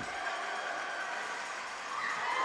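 Ice rink arena ambience during play: a low, steady background of hall noise with no distinct strikes.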